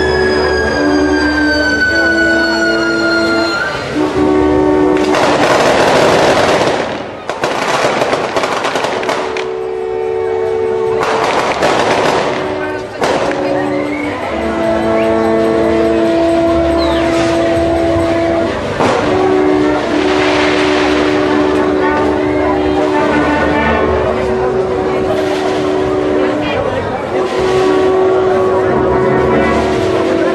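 A wind band playing long held brass chords, with a high note gliding slowly downward in the first few seconds and several loud crashes of noise, the first about five seconds in.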